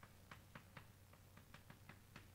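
Faint chalk taps on a blackboard while writing: short, sharp, irregular ticks, about four or five a second.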